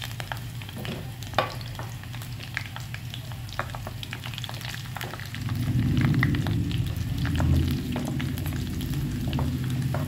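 A tempering mix and dried red chillies sizzle in hot oil in a clay pot, with scattered crackling pops over a steady low hum. From about five seconds in, a wooden spatula stirs and scrapes against the pot, louder than the frying.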